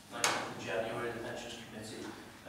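A man speaking into a desk microphone. A brief sharp sound at about a quarter second in, the loudest moment, opens his phrase.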